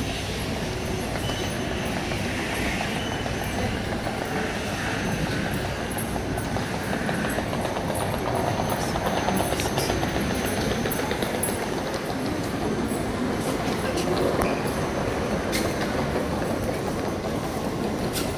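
Steady hum of a busy airport terminal hall, with indistinct voices murmuring through it and a few faint clicks.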